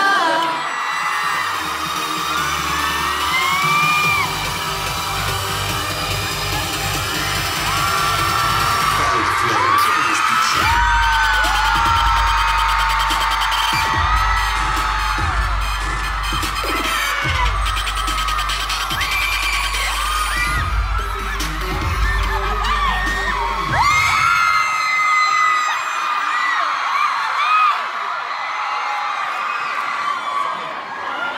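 K-pop track played loud over a concert hall's sound system with a heavy bass beat, under fans screaming and whooping. The beat cuts out about six seconds before the end, leaving the crowd's screams.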